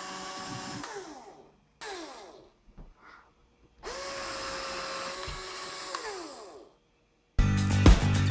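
Cordless power drill boring holes through a pumpkin's wall in three bursts: a long one ending about a second and a half in, a short one around two seconds, and a longer one from about four to nearly seven seconds. Each burst ends with the motor's pitch falling as it spins down. Music starts near the end.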